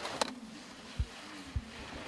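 Faint outdoor race-course sound: a steady hiss of skis scraping over snow, with one sharp click just after the start and two short low thumps about a second and a second and a half in.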